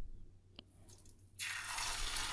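An egg-dipped lavash sandwich goes into hot oil in a frying pan, and the oil starts sizzling suddenly about two-thirds of the way through, after a near-quiet start.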